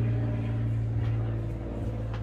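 A steady low machine hum, one deep unchanging tone with overtones, over faint room noise.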